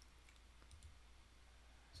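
Near silence: room tone with a low hum and a few faint mouse clicks.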